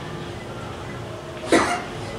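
A man coughs once, a single short, sharp cough about one and a half seconds in.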